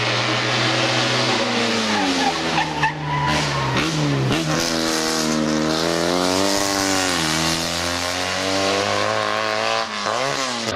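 Steyr-Puch 650TR's air-cooled flat-twin engine working hard. Its pitch falls as the car slows for a hairpin between two and four seconds in, and the tyres squeal briefly in the corner. It then revs up again with a gear change about seven seconds in.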